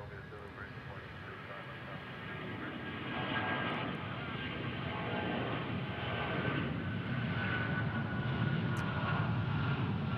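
Boeing 777 jet engines at takeoff thrust as the airliner climbs out: a steady roar that builds gradually in loudness, with a high fan whine running through it in the second half.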